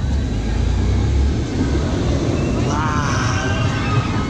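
Incredible Hulk Coaster's steel train rumbling along its track overhead, a loud low rumble that is heaviest in the first second or so. Voices rise over it about three seconds in.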